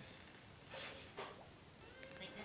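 Faint cartoon vocal noises from a television, recorded off its speakers: a brief hissy burst, then a short squeak that slides down and back up in pitch.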